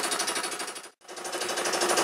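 Small belt-driven electric piston air compressor running with a rapid, regular pulsing beat as it pumps up its tank, run to test a freshly soldered pinhole in the tank for leaks. The sound drops out briefly about a second in, then resumes.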